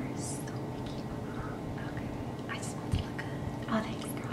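Soft whispering and breaths from women, a few short hissy sounds over a steady low room hum.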